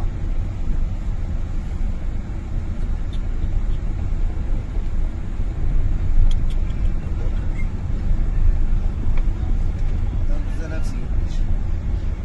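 Steady low rumble of a car's engine and tyres heard from inside the cabin while driving on a snow-covered road.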